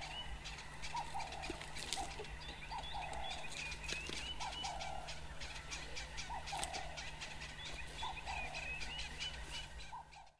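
Birds calling: a two-part call repeats about every second and a half, with higher chirps and scattered clicks among them over a steady low hum.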